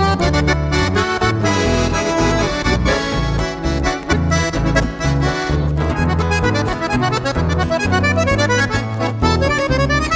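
Piano accordion leading the instrumental introduction of a chamamé, with nylon-string acoustic guitar and an acoustic bass guitar playing a stepping bass line underneath.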